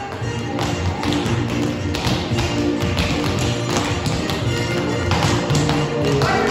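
Recorded dance music playing, with the clicks and taps of children's tap shoes striking the studio floor.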